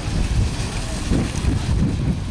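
Wind buffeting the camcorder microphone, a steady low rumble, with faint voices in the background.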